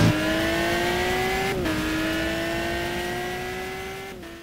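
A car engine accelerating, its pitch rising steadily, dropping briefly at a gear change about one and a half seconds in, then climbing again as it fades out near the end.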